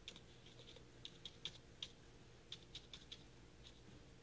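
Faint, irregular ticks, a few a second, of a dry watercolour brush dabbing paint onto paper, over a low steady hum.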